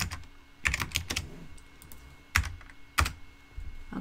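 Keystrokes on a computer keyboard: a handful of scattered key presses with pauses between them, the two loudest about two and a half and three seconds in.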